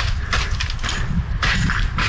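Wind buffeting the microphone of a body-worn action camera: a rough, rumbling noise that rises and falls in irregular gusts.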